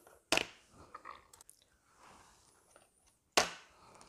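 Two sharp clicks about three seconds apart, with a few faint crackles between them, as tanghulu skewers with a hardened sugar coating are handled and set down in a clear plastic tray.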